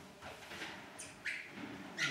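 Chalk scratching faintly on a blackboard in a few short strokes, with a brief squeak about a second in.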